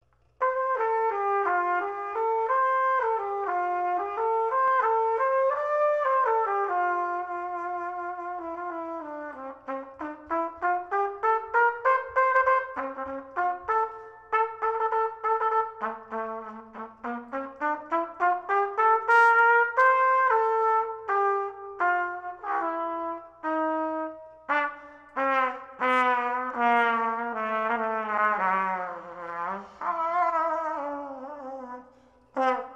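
Brass music: a trumpet carries the melody over a lower brass part, mixing held notes with runs of short detached notes and smooth slides up in pitch. It starts about half a second in.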